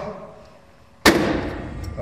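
Schneider air circuit breaker tripping open when its OFF pushbutton is pressed: one sharp, loud mechanical clack about a second in as the stored-energy mechanism throws the main contacts open, with a ringing decay after it.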